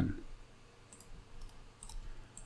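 A few faint, small clicks, spaced irregularly over about a second, against a low steady room hum.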